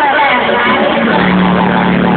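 Loud live concert sound through an arena PA, recorded on a phone and heavily distorted. A gliding sung or synth line blends with crowd noise, and a steady low held note comes in about halfway through.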